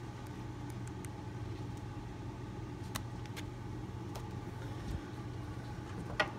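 A steady low hum with a few light clicks and a soft thump of thin picture books being handled, taken one by one from a boxed set.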